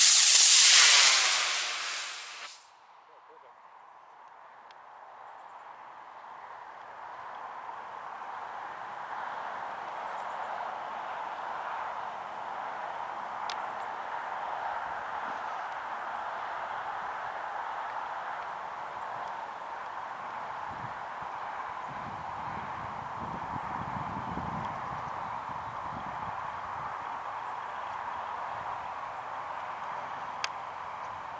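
24 mm Aerotech F-class model rocket motor firing at liftoff: a loud rushing hiss for about two and a half seconds that cuts off suddenly at burnout. After that a faint, steady background noise runs on while the glider coasts.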